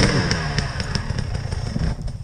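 Enduro dirt bike engines running: a steady low chug of idle close by, with revs that rise and fall, loudest at the start and easing off within the first second. A few light knocks and clatter.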